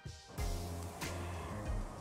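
Soft background music, with a light rustling and a click from about a third of a second in as thin, crisp cookies are slid against each other into a plastic jar.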